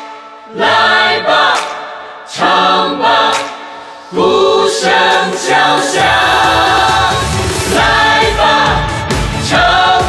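A pop song sung in Chinese: vocal phrases, with a steady drum beat coming in about six seconds in.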